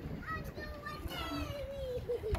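Children's voices calling out, high-pitched and gliding up and down in pitch, with one long falling call near the end, over a low rumble.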